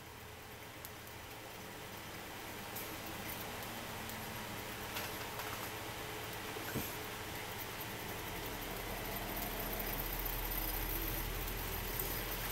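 Homemade single-coil DC motor: an enameled copper-wire coil spinning fast on its axle in bent-wire supports, the bare axle making and breaking contact with the metal holders. A steady noise with a few faint ticks, growing gradually louder as the coil speeds up with the magnet close.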